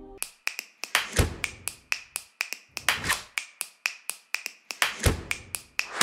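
A quick, uneven run of sharp clicks, about four a second, with a deeper thump roughly every two seconds.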